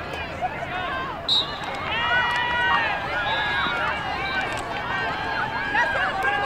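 Many overlapping voices of players and sideline spectators shouting and calling to one another, none of the words clear, with one longer held shout about two seconds in.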